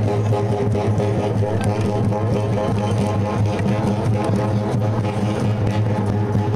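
Tarahumara dance music: a steady low drone with a quick repeating melodic figure over it, played on the hand drums the dancers carry.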